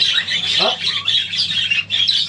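A roomful of caged parakeets chattering and squawking without a break, a dense high-pitched din.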